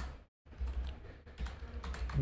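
Typing on a computer keyboard: a quick run of irregular key clicks, broken by a brief gap of silence a little way in.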